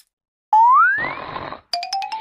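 Cartoon sound effects: about half a second in, a short tone glides quickly upward over a burst of noise. Near the end, a rapid run of ticks begins, rising steadily in pitch.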